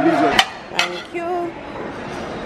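A held sung note from voices in a busy dining room breaks off, followed by two sharp clinks of ceramic plates being handled, then faint voices.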